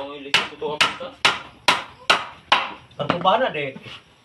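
Hammer driving nails into wooden bed-frame boards: about seven even blows, roughly two a second, stopping a little before three seconds in. A man's voice follows near the end.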